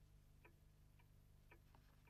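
Near silence: faint ticks, about two a second, over a low steady hum.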